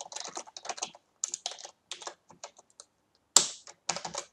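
Computer keyboard typing: a quick run of keystrokes that thins out after about a second into scattered single key presses, with one louder key strike a little before the end.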